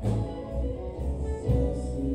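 Live rock band playing electric guitars and drums, with new note attacks about a second and a half in. Recorded on a phone's microphone from within the audience.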